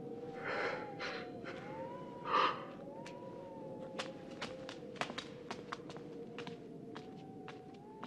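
Two breathy sighs, the second and louder one about two and a half seconds in, over a faint, slowly wavering tone. After that come light, uneven footsteps.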